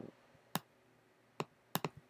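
Faint computer mouse clicks: a few single clicks, the last two in quick succession near the end.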